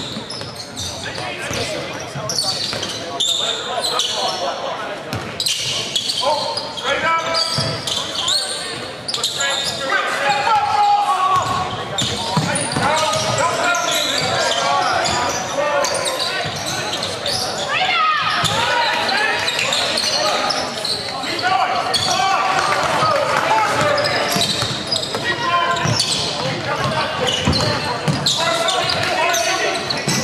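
Basketball being bounced on a hardwood gym court during live play, amid indistinct calls and shouts from players and spectators, echoing in a large hall.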